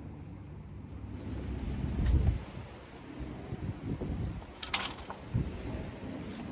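Outdoor work noise: low rumbling and rustling as a person works at a wheelbarrow of compost, with a short sharp clatter a little before five seconds.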